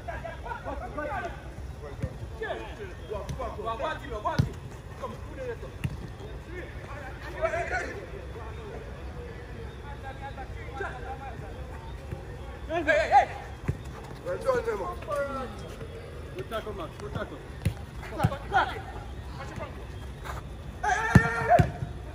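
Footballers shouting and calling to each other during play, with the occasional thud of the ball being kicked. The loudest shout comes near the end.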